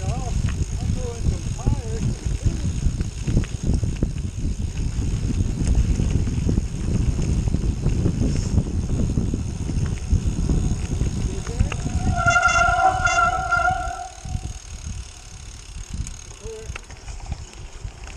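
Wind rush on a handlebar-mounted action camera and gravel-bike tyres rumbling over a dirt trail. About twelve seconds in, a steady high squeal sounds for a second or two. The rumble then drops as the bike slows.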